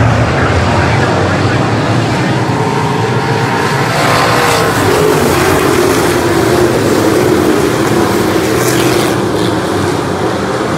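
Dirt-track race car engines running hard on the oval. About halfway through, a car passes close and its engine note drops, then holds steady.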